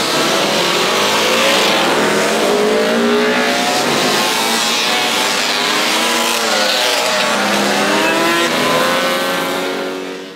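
A pack of classic racing motorcycles revving and accelerating away from a race start, many engine notes rising and overlapping. The sound is loud throughout and fades near the end as the last bikes pass.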